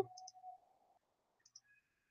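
A couple of faint computer mouse clicks in a very quiet room, one near the start and one past halfway, after a trailing hum of the voice fades out.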